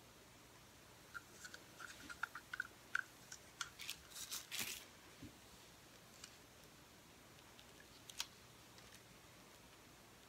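Light plastic clicks and taps of small paint cups and a plastic measuring cup being handled and set down. The clicks come in a quick flurry from about one to five seconds in, then a single sharper tap near eight seconds.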